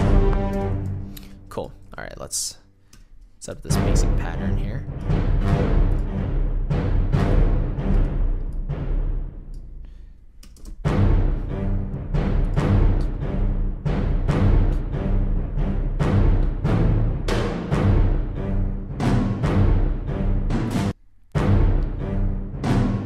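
Sampled cinematic orchestral percussion from ProjectSam's The Free Orchestra 'Power Strike' patch, bass drum and tom hits ringing out in a driving rhythm as a MIDI drum part is played back. Playback breaks off briefly about two seconds in and again about ten seconds in, and cuts out suddenly about a second before the end.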